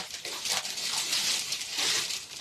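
Plastic-wrapped garments and cardboard boxes rustling and crinkling as they are rummaged through by hand.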